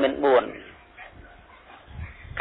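A man's voice speaking that stops about half a second in, followed by a pause of about a second and a half with only faint background hiss.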